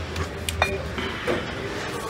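Glass wine bottles clinking against each other as a bottle of sparkling wine is pulled off a crowded shop shelf: a few light knocks, one with a short ring.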